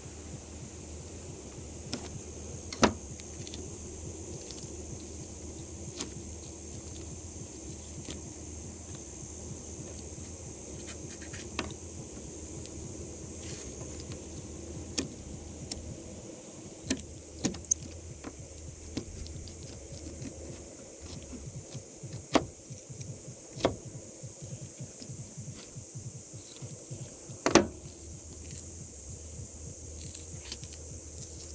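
Knife and gloved hand working a bluegill on a plastic cutting board while skinning it: scattered sharp taps and knocks, including a quick run of three about halfway through. A steady low hum lies under them.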